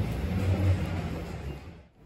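Low rumble of a motor vehicle's engine in street traffic, dying away near the end.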